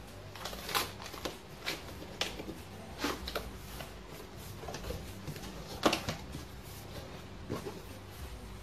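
Cardboard box being opened by hand: a tape seal peeled off and the flaps pulled open, heard as scattered short rustles, scrapes and knocks of cardboard, the loudest about six seconds in.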